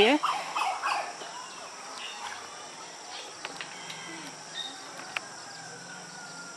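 Steady high insect trilling, with occasional faint bird chirps.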